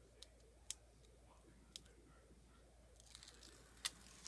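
Faint paper handling, near silence: a few soft, scattered ticks as a sheet of paper is laid down and pressed onto double-sided tape, the clearest one near the end.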